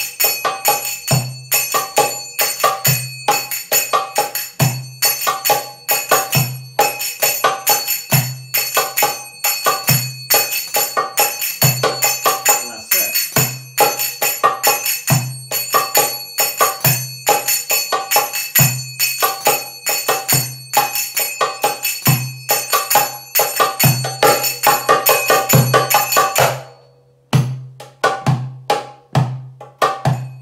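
Brass finger cymbals (sagats/zills) playing a steady triplet pattern of bright ringing strikes over a darbuka's maqsum rhythm, its deep doum strokes falling about every two seconds. About 26 seconds in the playing stops briefly, then resumes in the ayoub rhythm with the cymbals on the 3-3-7 pattern.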